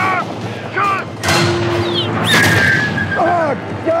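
Two heavy tank-gun blasts about a second apart, the second trailing a long ringing tone, with men shouting between and after them.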